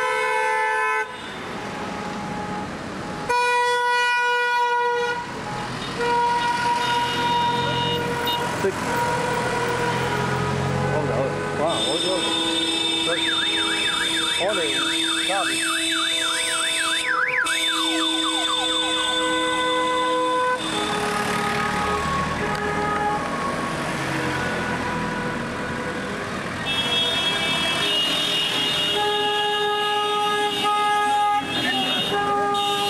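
Car horns of a wedding convoy honking continuously as the cars pass, several horns at different pitches held long and overlapping. In the middle a horn with a fast up-and-down warble, like a siren, joins in.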